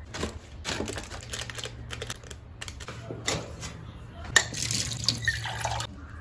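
Handling sounds at a kitchen counter: clicks and knocks of a cardboard box, a plastic packet and a small steel cup. Near the end comes a short hissing stretch of pouring from the steel cup into a plastic tray of fuller's earth powder. A low steady hum runs underneath.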